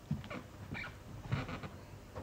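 A man's short wordless vocal sounds, about four quick bursts, made as he mimes a table tennis rally.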